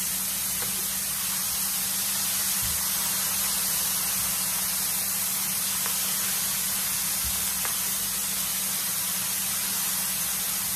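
Pollock fillets sizzling steadily in hot, deep grease, a constant even hiss of frying.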